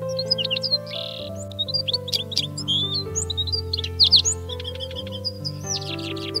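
Siskins singing: a dense run of rapid high chirps, twitters and trills, thickest around two and four seconds in, over calm background music with long held notes.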